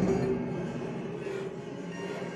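Metal strings of a stripped upright piano frame ringing on after a loud strike at the very start, a sustained metallic sound with steady low tones that slowly fades. It is layered with live-looped, electronically processed string sounds.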